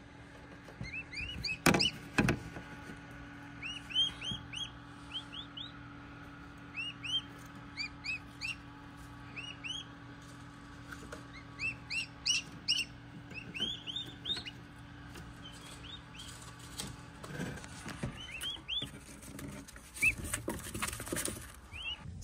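Newly hatched Rio Grande turkey poults peeping: short, high chirps in quick runs of two to four, repeated throughout, over a low steady hum. A couple of sharp knocks about two seconds in, and handling noises near the end.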